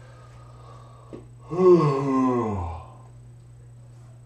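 A person's drawn-out groan while stretching, falling steadily in pitch over about a second, with a breathy edge. A small click comes just before it.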